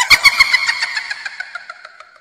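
Ghost-themed phone message tone: a rapid, high cackling laugh that fades away over about two seconds, opening with a few deep thuds.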